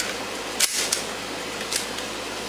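Steady background hiss, with a brief handling click about two-thirds of a second in as a small pistol is picked up off a towel, and a fainter one near the end.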